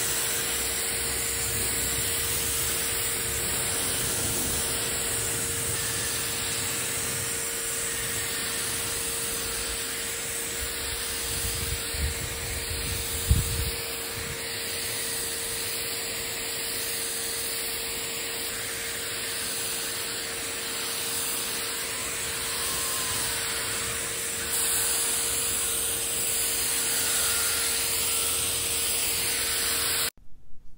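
Turbine-driven paint sprayer running steadily, its motor whining under a constant hiss of atomised primer from the spray gun. A few low knocks come about halfway through.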